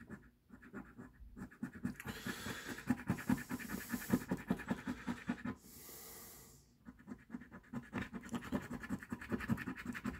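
A coin scraping the latex coating off a paper scratch-off lottery ticket in quick back-and-forth strokes. It pauses briefly about halfway through, with a soft hiss, then scraping resumes.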